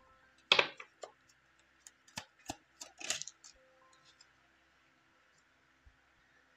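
Tarot cards being drawn from the deck and laid down: a short slide about half a second in, then a run of light clicks and taps for about three seconds.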